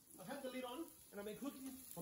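Faint, low-level speech from a man's voice, in two short stretches with a brief pause near the middle.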